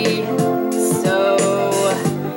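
A woman singing a song, her voice sliding into and holding notes over sustained backing music.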